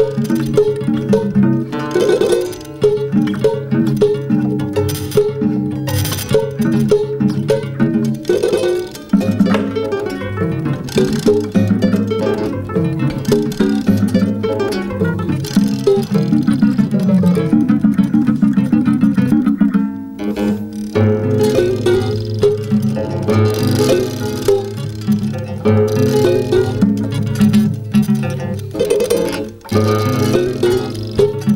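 Two classical guitars played as a duet, their strings prepared with nuts, bolts, fishing weights and alligator clips that give bell-like, gong-like and percussive tones to the plucked notes. Dense picked passages, with a run of fast repeated notes about two-thirds of the way through.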